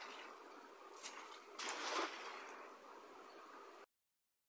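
A hand-thrown cast net (atarraya) landing on the river with a splash about a second and a half in, after a smaller splash at about one second, among water sloshing around a man wading waist-deep. The sound cuts off suddenly just before the end.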